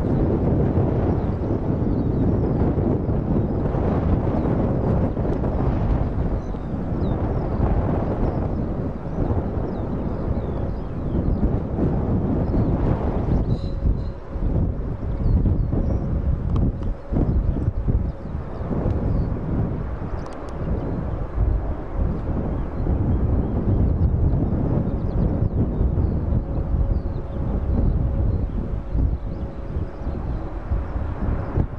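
Airbus A320 jet engines on final approach and landing, mixed with heavy wind rumble on the microphone. A steady engine whine comes in about halfway through and holds to the end.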